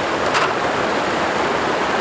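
Water rushing steadily through a flooded spillway.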